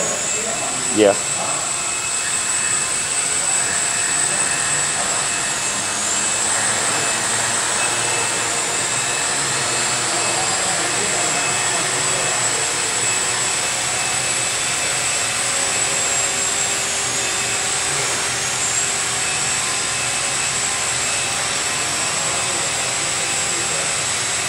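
Quadcopter's four 750Kv brushless motors spinning 12x6 APC propellers in a hover: a steady whirring buzz with a thin high whine over it, holding level throughout. The craft has a slight wobble, which the pilot puts down to the flight controller's gain being set too sensitive.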